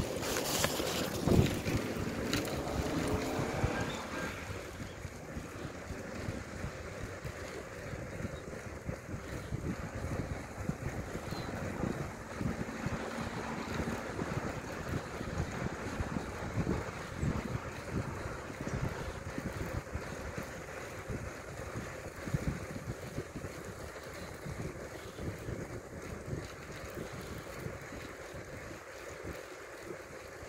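Wind buffeting a phone's microphone as it is carried along, a steady rumbling rush. For about the first four seconds it is louder, with knocks and rustling from the phone being handled.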